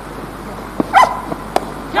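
A sharp crack from a cricket bat striking the ball, about a second and a half in. Just before it comes a loud, short, high-pitched call, and a shout starts right at the end.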